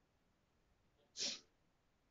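A single short, breathy noise from the teacher's nose or mouth, such as a quick sniff or exhale, a little over a second in, against near silence.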